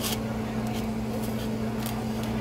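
A steady low mechanical hum, with a few faint light clicks.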